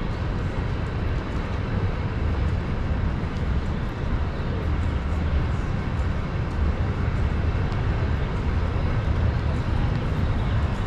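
Downtown city street ambience: a steady, even rumble of traffic and street noise, heaviest in the low end, with no single sound standing out.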